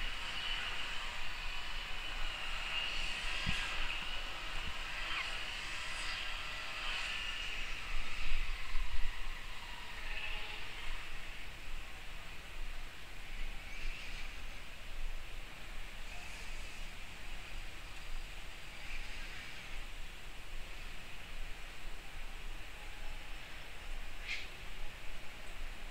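Soft, scratchy strokes of a nylon filbert brush laying acrylic paint onto mixed-media paper, over a low steady hiss. A brief louder low rumble comes about eight seconds in.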